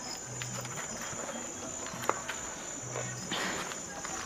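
Quiet outdoor background noise: a steady high hiss, a low hum that comes and goes, and a single sharp click about two seconds in.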